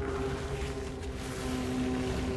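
Motorcycle running with a rush of wind noise, over a low, steady droning music score.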